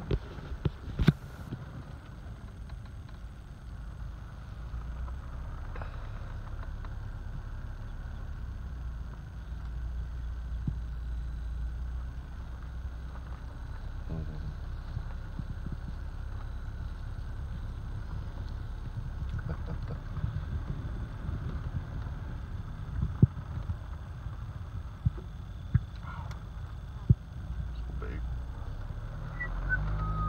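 Low, steady rumble of a car moving slowly, heard from inside the cabin, with a few sharp knocks, one about a second in and two more late on.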